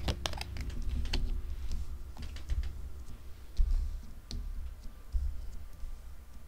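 Tarot cards being handled and laid down on a cloth-covered table: scattered light clicks and taps, with a few soft low thumps.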